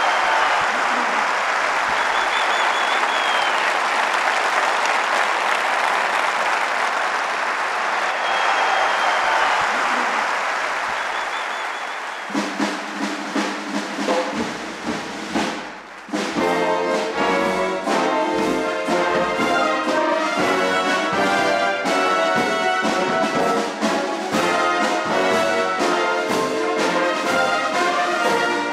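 Audience applause, steady for the first part, fading out as a police brass marching band starts to play softly. A few seconds later the full band comes in with horns, saxophones and sousaphone playing a brass march tune.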